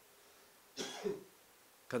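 A man clearing his throat once, about a second in, in two short pushes.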